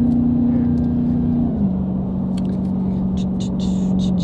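Dodge Challenger SRT Demon's supercharged V8 heard from inside the cabin while driving: a steady drone that steps down in pitch about a second and a half in and again at the very end as the engine speed drops. Faint ticks and rustles come in the second half.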